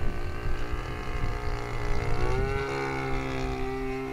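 Engine of a large-scale radio-controlled Beaver model aircraft droning in flight overhead, its note rising a little about two seconds in and then holding steady.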